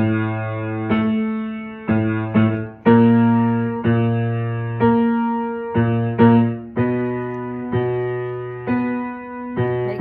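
Piano playing a slow run of struck notes and chords, about one a second, each fading before the next: accompaniment for a baritone vocal warm-up.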